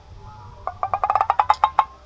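A rapid, even run of sharp wooden-sounding knocks, about ten a second, starting about half a second in, like a woodblock sound effect.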